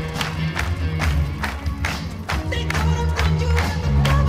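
Malayalam film song playing, with a steady, quick drum beat and a bass line under crowd noise.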